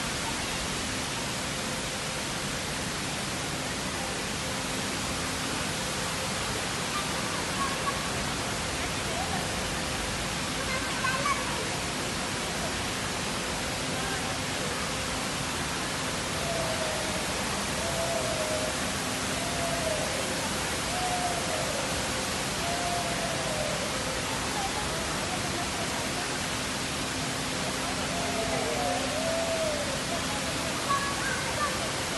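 Water fountain jets spraying and splashing steadily into the basin: a dense, even rush of falling water, with a faint steady hum underneath.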